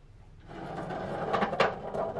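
A large unstretched painted canvas rubbing and scraping against the wall as it is handled, a creaking, rustling sound of about two seconds with two sharp clicks in the middle.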